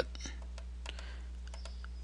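A few faint, irregular computer keyboard key presses over a low steady hum.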